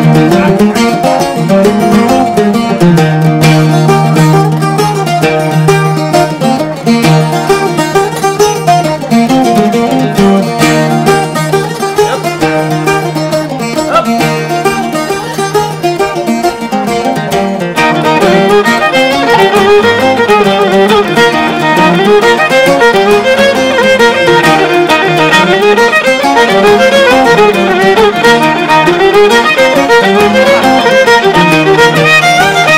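Irish traditional jigs played on fiddle with strummed acoustic guitar accompaniment, at a lively steady tempo. About eighteen seconds in the sound grows fuller and brighter.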